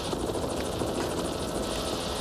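Helicopter in flight: a steady rotor and engine noise, heard over the radio link from its cabin.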